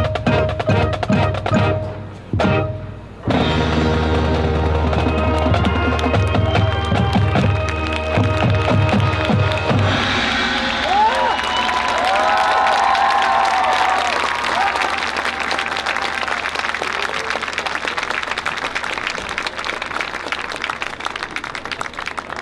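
High school marching band finishing its show: rhythmic drum and percussion hits, a brief break, then the full band of brass and percussion holding a loud closing chord, cut off about ten seconds in. Crowd applause and cheering with whoops follow and slowly fade.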